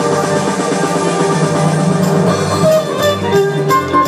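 Electric violin played with a bow, performing Turkish music over an accompaniment with drums; the drum beat becomes sharper and more distinct about halfway through.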